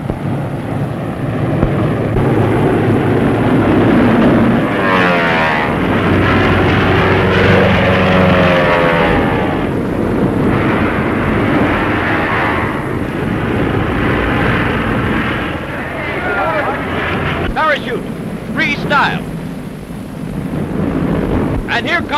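Piston engines of a formation of propeller-driven military planes droning overhead in a loud, continuous roar, the pitch sliding up and down as they pass.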